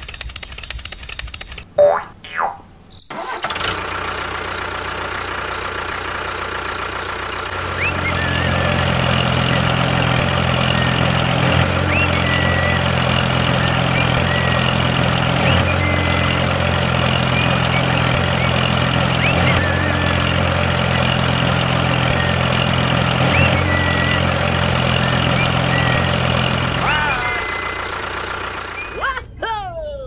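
Steady low engine drone, growing heavier about eight seconds in and fading out near the end, with short sliding boing-like tones about two seconds in and again at the very end.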